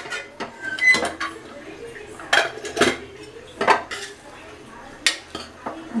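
Stainless steel pressure cooker being opened: the metal lid clanks against the pot as it is twisted free and lifted off, then a steel ladle knocks in the pot. About half a dozen sharp metallic clinks, irregularly spaced.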